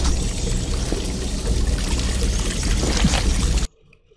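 Cartoon sound effect of thick sauce pouring in a heavy, steady stream from a dispenser, with a low rumble beneath, cutting off suddenly near the end.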